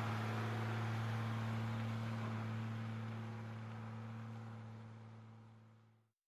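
Steady low electrical hum with one overtone and a soft hiss from the recording, fading out to silence over the last two seconds.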